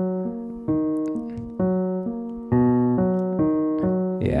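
Piano playing a broken-chord pattern in the low register (bottom, top, middle, top), each note struck evenly at about two a second and left to ring. It loops E-flat minor into B major, with the lower B major chord coming in about two and a half seconds in.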